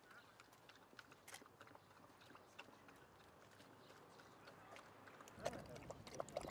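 Faint outdoor quiet, then about five seconds in a dog starts lapping water from a feeding-station water tray, a quick irregular run of wet clicks.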